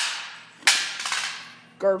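Two sharp cracks ring out in a hard-walled room. The first comes right at the start and the louder second one about two-thirds of a second in; each leaves a fading echo of about a second.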